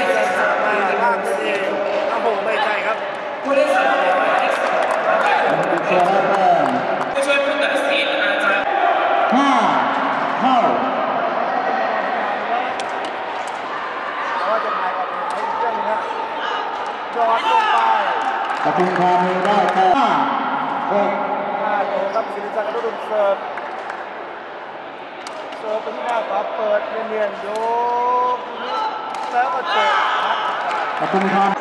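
Sepak takraw ball kicked back and forth in rallies, a series of sharp knocks, among players' shouts and spectators' voices. A man's commentary comes in near the end.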